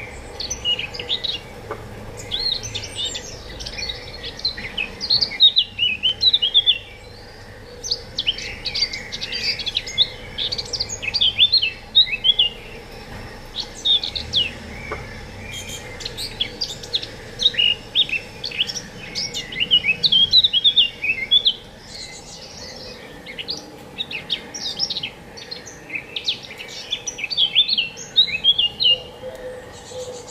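A songbird singing long phrases of rapid, high twittering notes, each phrase lasting several seconds, with short pauses between them.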